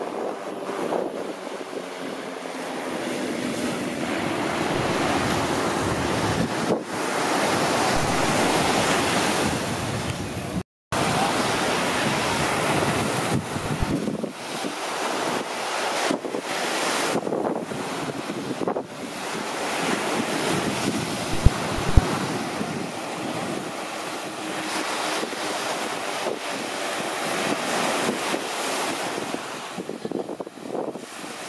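Wind buffeting the microphone over the steady wash of surf, with no distinct engine note standing out. The sound drops out for an instant about a third of the way in, and two short low thumps come about two-thirds of the way in.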